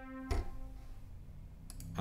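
Roland Juno-106 analogue synthesizer holding a steady C4 note, which cuts off about a third of a second in with a thump. After that only faint room noise, with a few small clicks near the end.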